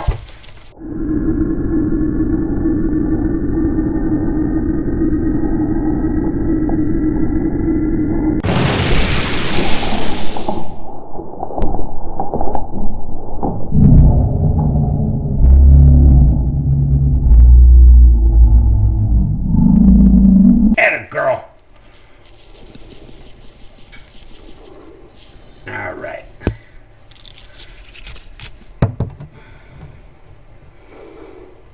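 Added dramatic sound design: a steady drone with a thin, slowly rising whine, broken about eight seconds in by a sharp whoosh. Several seconds of very loud, deep booming bass follow and cut off abruptly just past the twenty-second mark, leaving only faint low sounds.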